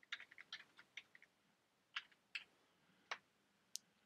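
Faint typing on a computer keyboard: a quick run of keystrokes in the first second, then a few single keystrokes spaced out over the rest.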